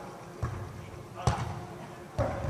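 A volleyball being struck by hand: a light knock about half a second in, then a sharp, much louder smack, echoing in a large hall.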